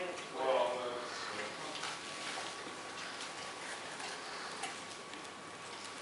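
A short human voice near the start, then faint scattered clicks and taps as a dog works a rubber Kong toy around on a tile floor.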